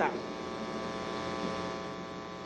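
Steady electrical mains hum with many evenly spaced overtones, picked up in the sound system or broadcast audio.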